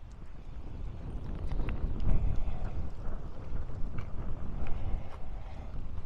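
Wind buffeting the microphone while riding a bicycle, a low rumble that swells about a second in as the bike gets moving, with scattered small clicks and rattles from the bike over the asphalt.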